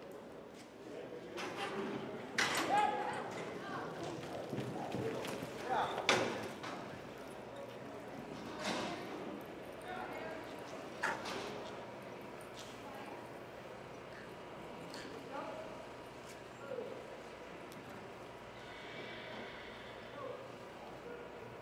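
Hoofbeats of a roping horse running in soft arena dirt during a tie-down calf roping run, with people shouting several times and a few sharp knocks, loudest in the first half. It is quieter in the second half.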